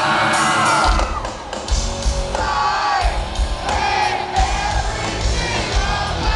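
Live hard rock band playing through a large arena PA: electric guitars, bass, drums and vocals, heard from within the crowd, with the audience cheering and yelling over the music.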